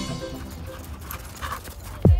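Faint sounds of a dog running through snow, under the fading tail of background music.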